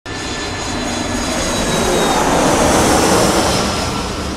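Aircraft passing overhead: a rushing engine noise that swells to its loudest about three seconds in and then begins to fade.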